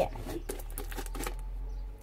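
Fluffy slime being pressed and stretched by hand, with scattered small sticky clicks and crackles. A faint low hum runs underneath.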